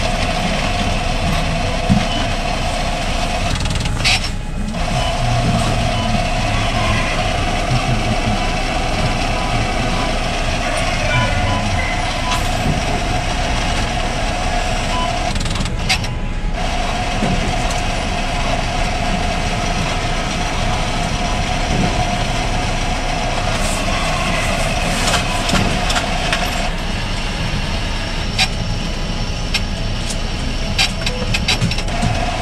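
Bank ATM's coin-deposit mechanism counting a batch of small yen coins: a steady mechanical whir with clicking and rattling of coins. It pauses briefly twice and the whir stops a few seconds before the end.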